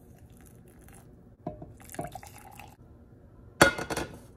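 Hot water poured from a small saucepan into a mug with a tea bag, with the pan and mug clinking twice about a second and a half in, and a loud clunk near the end.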